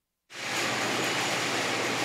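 A brief silence, then a steady, even hiss of background noise starts suddenly and holds. It is the room sound of a large warehouse-style store.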